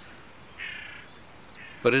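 A single short pitched bird call, about half a second long, somewhat under a second in, with a faint second call just before the voice returns.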